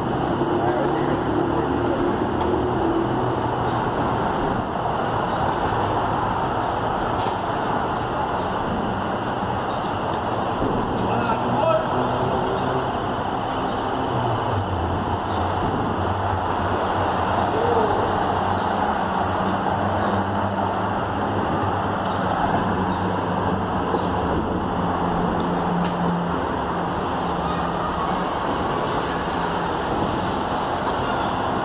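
Steady city traffic noise with the low hum of vehicle engines going by.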